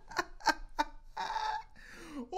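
A person laughing in short cackling bursts, about three a second, then a held higher note.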